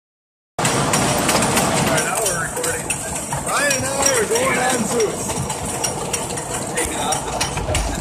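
A wooden roller coaster train being hauled up the chain lift hill, with a steady rattle and rapid irregular clacking from the lift chain. It starts suddenly about half a second in.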